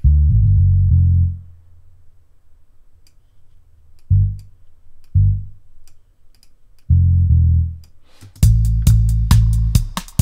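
Deep synth sub-bass notes from a DAW. There is a longer note at the start, single short notes about four and five seconds in, and another near seven seconds, as notes are placed and auditioned in a reggae bass line. From about eight and a half seconds the bass line plays in rhythm together with drum hits.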